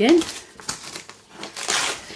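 Brown paper parcel wrapping being torn open and crinkled by hand, a rustling rip that is loudest near the end.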